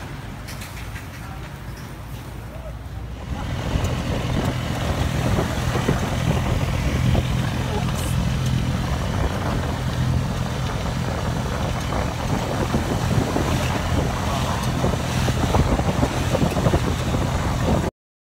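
Tuk-tuk driving along a road, heard from the open passenger carriage: its motorbike engine runs steadily under loud road and wind noise. For the first few seconds, before the ride starts, only quieter market background sound.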